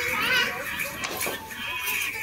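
Young children's voices over music playing, one voice wavering up and down in pitch in the first half second.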